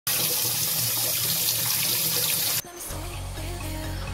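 Water spraying under pressure from a leaking white plastic pipe valve, a loud steady hiss that cuts off suddenly about two and a half seconds in. Background music with a steady beat follows.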